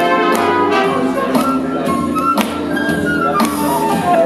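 Big-band style backing track with brass playing over a regular drum beat, played loud through PA speakers.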